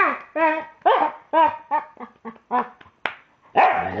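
A dog 'talking': a run of about ten short, pitched yelps and woofs that bend up and down. About three and a half seconds in it breaks into a long, drawn-out wavering howl.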